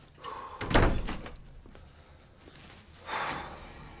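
Wooden interior door pulled shut with a loud slam about three-quarters of a second in. A brief, softer rush of noise follows about three seconds in.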